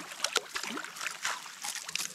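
Small splashes and drips of water as a landing net holding a fish is lifted out of a river, over a steady hiss of rain on the water.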